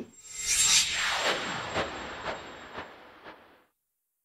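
Outro sound effect: a noisy, rasping swell with faint pulses about twice a second, fading away over about three seconds.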